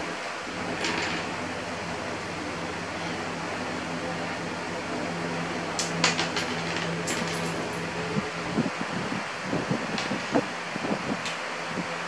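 Steady hum and hiss of an electric fan running in a small room, with a few sharp clicks and small knocks of plastic Lego bricks being handled, starting about halfway through.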